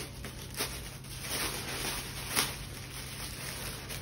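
Clear plastic packaging rustling and crinkling in short irregular crackles as a face visor is unwrapped by hand.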